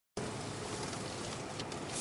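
Steady in-cabin driving noise of a Mercedes C 250 CDI diesel saloon: a low, even rush of road, tyre and engine sound heard from inside the car.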